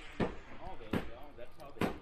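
Hand tamper thudding down onto a concrete stamp mat, three strikes a little under a second apart, pressing the stamp's pattern into the fresh concrete.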